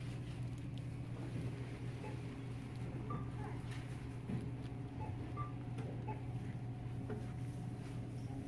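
Shop ambience: a steady low hum with faint scattered ticks and knocks, and a couple of faint short beeps.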